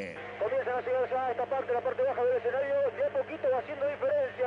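A race commentator talking fast over a radio broadcast line, with a steady low hum beneath.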